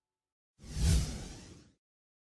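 Whoosh transition sound effect with a low boom at its peak. It swells in quickly about half a second in and fades out over about a second.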